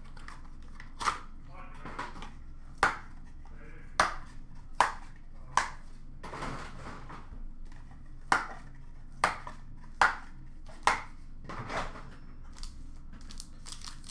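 Sports-card boxes and wrapped packs being handled: a series of sharp taps and knocks, about one a second, as they are set down and moved, with some crinkling of wrapper between.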